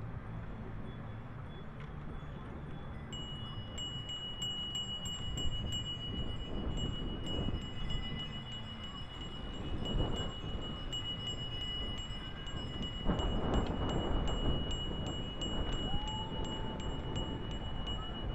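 Wind and road rumble from riding a bicycle in a large group ride. About three seconds in, a steady high-pitched ringing tone starts, with a quick run of regular light ticks over it, and both carry on to the end.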